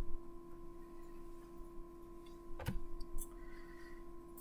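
Quiet room tone with a steady electrical hum, broken by a single sharp click a little past halfway.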